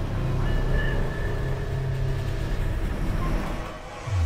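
Cinematic intro sound effect under an animated title card: a deep, steady rumbling drone with a faint high shimmer of held tones in the first second, easing off just before the end.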